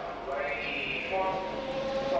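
Two-stroke Grand Prix racing motorcycle engine heard from a distance, holding a steady high note at high revs.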